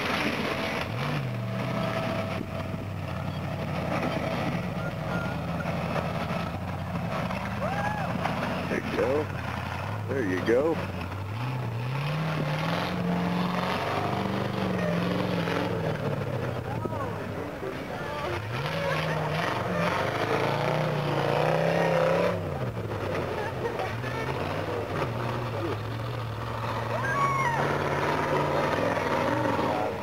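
Rock crawler buggy's engine working hard up a loose rock climb, its pitch rising and falling as the throttle is blipped, with two long rises to its highest revs in the middle.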